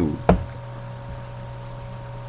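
A single sharp knock about a third of a second in, over a steady low electrical hum.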